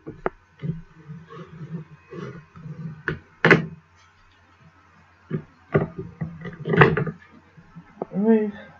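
A bone folder rubbing and pressing along the glued flaps of a cardstock envelope pocket, with soft scraping strokes. This is followed by several knocks of card and tool against the table, two of them louder, about three and a half and seven seconds in.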